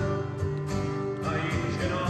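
Live folk ballad played on two acoustic guitars with a man singing lead, at a slightly quieter moment between louder sung lines.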